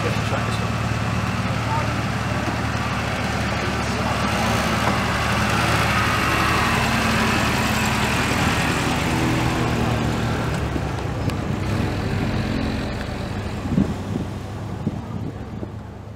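A vintage saloon car driving slowly past at low revs, its engine a steady low drone that fades away over the last few seconds as the car pulls off. There is a single short knock near the end.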